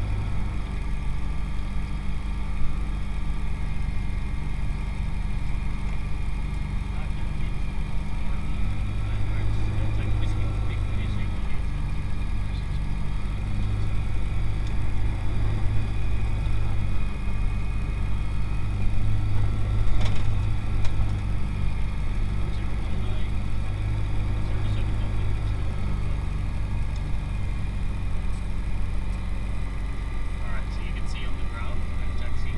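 Light aircraft's piston engine running steadily at low power while taxiing, heard from inside the cabin as a continuous low drone.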